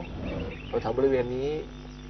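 A man speaking Thai in a short phrase, over a steady low hum.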